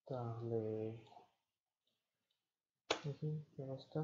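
A man's voice: a drawn-out vocal sound held for about a second, then, after a pause, a few quick words.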